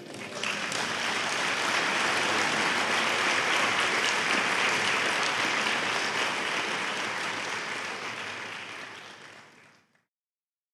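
Audience applauding a lecture's end, building over the first second, holding steady, then fading away near the end.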